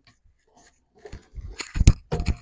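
Miter saw turntable being swung on its base by the front lock handle to the 45-degree setting: a few short clicks and knocks in the second half, with one sharp, loud click near the end.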